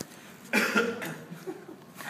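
A single loud cough about half a second in, followed by a faint short voice sound.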